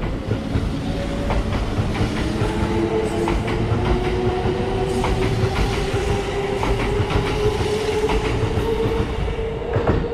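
A Kintetsu limited express, a 12200 series Snack Car set coupled to a 22000 series ACE set, runs along the platform. Its wheels click over the rail joints over a steady, slightly rising motor whine. The last car clears near the end.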